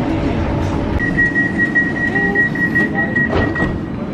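Tram interior running noise, a steady low rumble, with a high electronic tone pulsing rapidly for nearly three seconds from about a second in.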